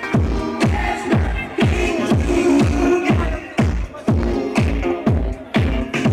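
Deep/tech house music playing loud through a sound system during a live set. A steady four-on-the-floor kick drum lands about twice a second under repeating synth chords.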